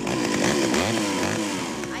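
Petrol chainsaw pull-started and revving, its engine pitch swinging up and down, then easing off near the end.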